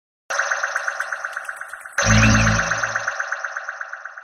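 Short electronic logo jingle for a news channel's intro: a fast-pulsing bright pitched pattern, joined about two seconds in by a deep bass hit, then fading out near the end.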